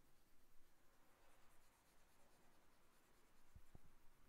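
Near silence: faint room tone, with two faint short clicks near the end.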